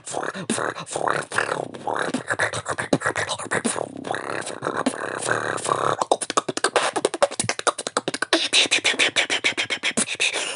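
Solo vocal beatboxing: mouth-made kick and snare hits mixed with held buzzing tones, turning about six seconds in into a fast, dense run of sharp clicks and hi-hat-like sounds.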